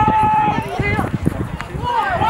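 Several voices shouting and calling out at once during a rugby match, opening with one long drawn-out shout.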